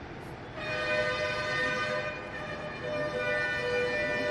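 Horanewa, the Sri Lankan double-reed pipe of an Eastern band, starting about half a second in and playing long held notes, moving down to a lower note near the end.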